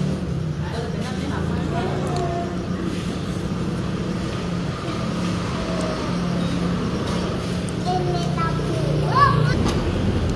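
Indistinct talk from several people at a shared meal over a steady low hum, with one higher voice rising briefly near the end.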